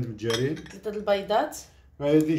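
A person talking in Moroccan Arabic, with light clinks of bowls and dishes on a table.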